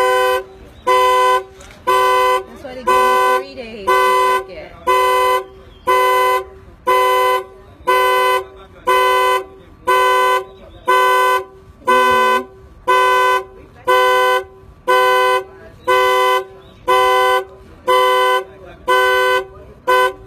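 Two-tone car horn honking in an even rhythm, about one half-second honk every second, some twenty times over. It is the pattern of a car alarm sounding the horn, and it stops near the end.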